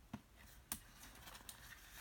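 A few faint clicks and taps of a clear plastic card holder being handled as a heavy trading card is fitted into it, the two clearest in the first second.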